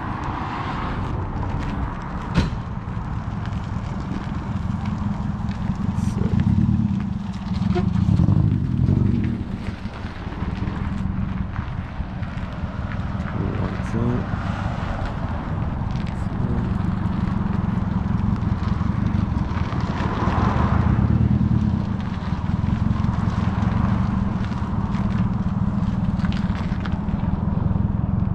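Outdoor car-meet ambience: a steady low rumble, louder for a few seconds twice, with faint voices in the background and a sharp click a couple of seconds in.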